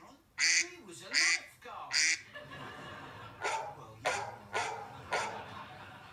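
Duck-quack ringtone played through a smartphone's speaker: a series of short quacks, three loud ones in the first two seconds, then four softer ones.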